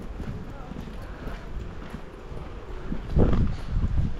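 Footsteps of a person walking on a paved footpath, close to the microphone, with a louder burst of sound a little after three seconds in.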